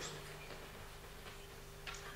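A pause in speech: room tone with a low steady hum and a few faint ticks.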